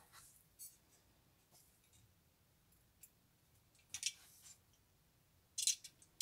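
A few faint, scattered clicks and taps from plastic model-kit parts and a small screwdriver being handled, with near silence between them. A short cluster of clicks comes near the end.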